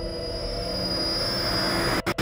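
Dramatic background score: several steady, held drone tones, high and low together, with a hissing swell that builds toward the end.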